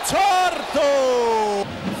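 A man's excited, drawn-out shout on a basketball TV broadcast: the commentator's voice sweeps up, then holds one long falling note that cuts off suddenly about a second and a half in, as he reacts to a three-point shot.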